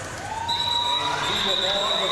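A referee's whistle blows one long, steady high note starting about half a second in, over arena crowd noise: the signal that ends the jam.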